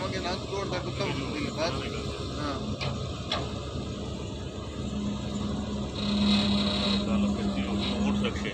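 Wheeled excavator's diesel engine running as it swings and digs, under background voices; about five seconds in a steady droning tone comes up and gets louder.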